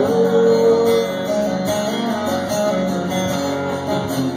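Live band music led by strummed acoustic guitars, played loud through the PA.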